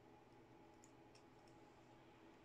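Near silence: room tone with a few faint, short clicks about a second in, from crocodile-clip test leads being handled on a drill's circuit board.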